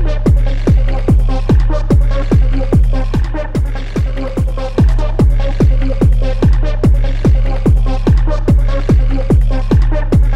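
Hard techno track: a fast, steady four-on-the-floor kick drum, each hit dropping in pitch into a deep bass, with a held synth tone above it.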